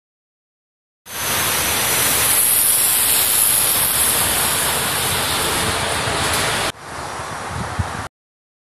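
Steady, loud rushing hiss of outdoor street ambience above a busy road, starting suddenly about a second in. It cuts off abruptly near the end to a quieter, duller hiss.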